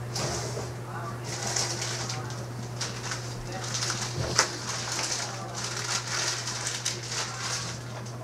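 Indistinct, wordless voice sounds such as whispering or murmuring over a steady low hum, with one sharp click a little past the middle.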